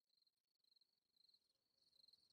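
Near silence, with very faint, steady high chirring like night insects fading in.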